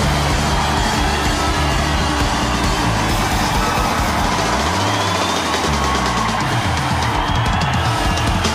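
Live rock band playing on stage: drum kit, guitars and horns, with a bass line that slides down and back up about halfway through.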